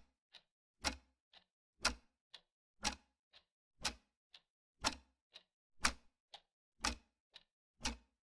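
Clock ticking steadily: a loud tick once a second with a softer tick halfway between each.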